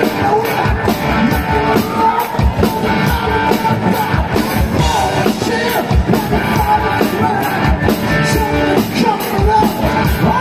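Live band playing a loud rock song with a singer over a steady drum beat.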